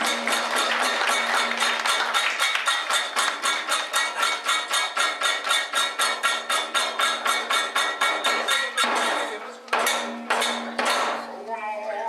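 Kagura accompaniment of small hand cymbals clashed in a fast, even rhythm, about six or seven strokes a second, each stroke ringing on. About three-quarters of the way through the rhythm stops, and a few slower, separate strokes follow.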